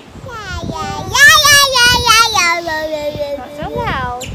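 A young child singing one long drawn-out note in a high voice. The note wavers, swells loud about a second in, then slowly falls in pitch and trails off near the end.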